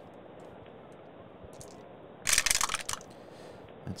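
Dice rolled into a wooden dice tray, clattering for under a second a little past halfway through, with a few last clicks as they settle.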